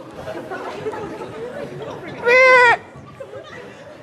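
A man imitating an animal call: one loud, high, held cry about half a second long, a little past halfway through, over low murmur from the audience.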